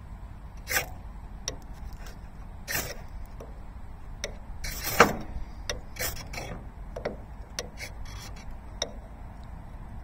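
Ferro rod struck again and again with a steel striker, each stroke a short rasping scrape, irregularly spaced with the loudest about five seconds in: throwing sparks onto fatwood shavings to light tinder.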